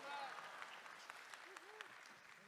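Faint applause from a congregation, with a few distant voices, dying away.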